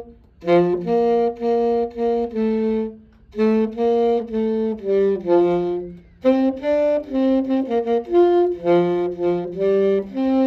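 Saxophone played solo and unaccompanied: a single melody line of separate notes in three phrases, with short pauses for breath between them.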